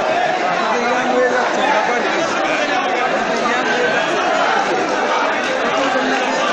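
Many people talking over one another at once: a crowd's chatter, steady throughout with no single voice standing out.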